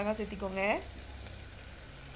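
Chopped onions and green chillies sautéing in an aluminium pressure cooker on a gas flame: a faint, steady sizzle of frying.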